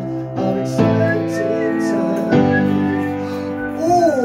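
Upright piano chords, a new chord struck about a second in and another just past halfway, each left ringing, as chords are tried out for the song's line.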